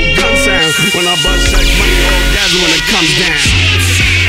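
Hip hop track from a DJ mix, with rapping over a heavy bass beat; the bass drops out briefly about half a second in and comes back just after a second.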